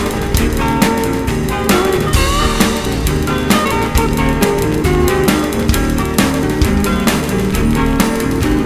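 Instrumental rock music: guitar and bass over a drum kit keeping a steady beat, with no singing.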